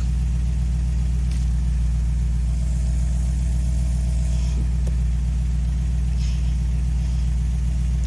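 Small home ozone generator running with a steady low hum from its fan and generator; it is blowing only gently.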